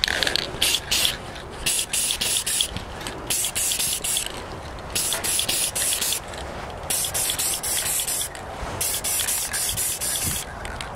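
Aerosol spray paint can hissing in many short bursts, with a few longer sprays of about a second, as a light coat of green paint is dusted on.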